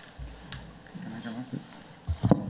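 Quiet chuckling laughter from a panelist, with a low rumble near the start from the table microphone being handled.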